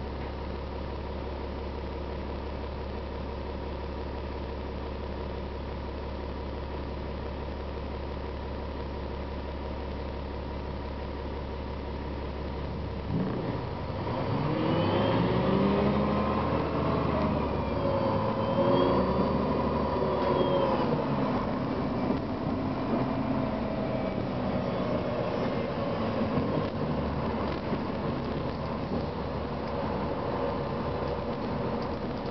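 Cummins ISM inline-six diesel of a Gillig Advantage bus, heard from inside the cabin. It idles with a steady low hum, then about 13 s in it gets louder as the bus pulls away. Its pitch climbs and drops back a couple of times as the Voith automatic works up through its gears, then it settles into steady running.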